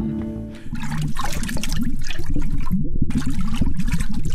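A sung TV theme jingle's last held note fades out, then a bubbling underwater water sound effect sets in with music and carries on to the end.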